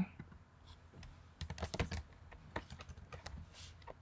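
Computer keyboard being typed on: quick, irregular key clicks, starting about a second and a half in.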